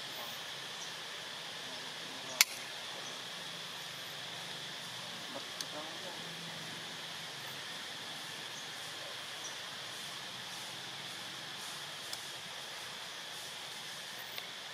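Steady outdoor ambience: an even high hiss with a steady high-pitched drone. One sharp click comes about two and a half seconds in, with a few faint ticks later.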